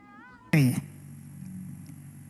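A sudden, short, loud cry falling in pitch about half a second in. It is followed by a steady low hum and hiss, the background of an old talk recording.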